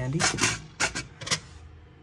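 Small plastic parts boxes of screws clicking and rattling in their organizer tray as a hand sorts through them, about four sharp clicks in the first second and a half.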